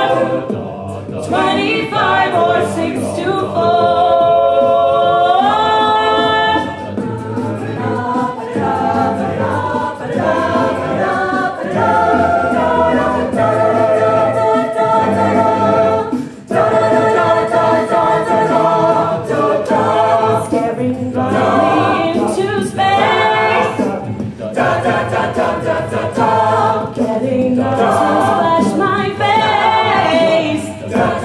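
Mixed-voice a cappella group singing, with no instruments: several voices hold stacked chords and slide between notes over a steady bass line.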